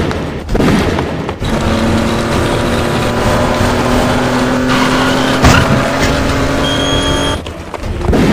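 Car engine running with a steady hum that rises slightly in pitch, and a sharp click about five and a half seconds in.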